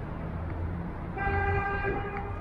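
A vehicle horn sounds once, a steady single-pitched toot lasting just under a second, starting about a second in, over a steady rumble of street traffic.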